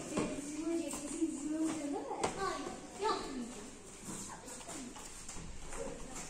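Faint voices talking in the background, with one sharp knock about two seconds in.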